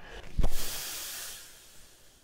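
Edited transition sound effect: a short low thump, then a hiss that fades away over about a second.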